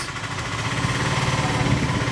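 An engine running steadily at idle, a low even hum.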